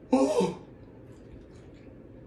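A man's short, breathy vocal exclamation, an 'oh' whose pitch falls, about a tenth of a second in: a reaction of pleasure at tasting food after days without it.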